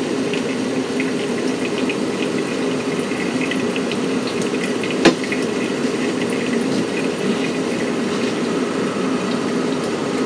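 Brewed coffee draining from a paper drip filter into a glass server, a steady trickling fill. A single sharp knock about five seconds in as the steel kettle is set down.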